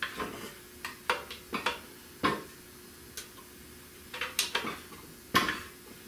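Scattered sharp metallic clanks and clinks as a seized Buick 455 V8 is forced to turn a little by its flywheel and torque converter, in two groups with the loudest knock near the end. The engine is locked up and has only just begun to move.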